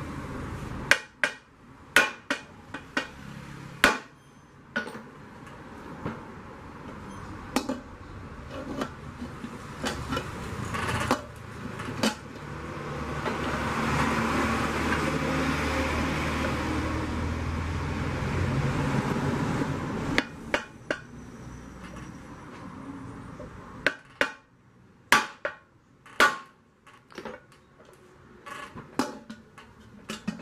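Irregular sharp knocks of a hammer striking the side of an aluminium pressure cooker pot, to reshape it so the lid will go in. In the middle a steady rumbling noise swells and fades.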